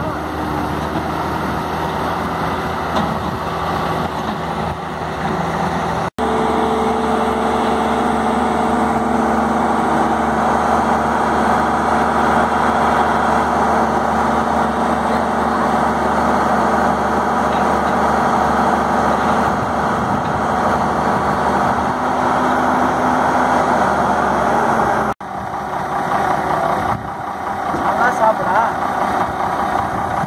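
Heavy diesel engine running steadily. It breaks off sharply twice, about six seconds in and near twenty-five seconds in, and runs louder and more even between the breaks.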